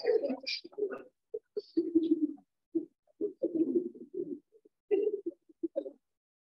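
Children giggling and laughing in short, choppy bursts, heard through video-call audio that cuts to silence between sounds.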